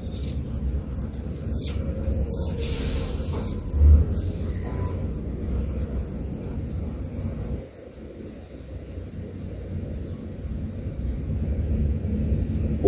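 Pages of a Bible being leafed through, with a steady low rumble underneath and a single thump about four seconds in.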